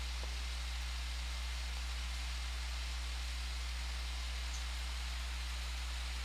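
Steady low electrical hum with faint hiss, the recording's background noise in a pause with no speech.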